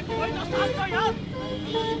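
Background music with a quick, regular pulse of two alternating notes, about four a second, under shouting voices that are loudest in the first second.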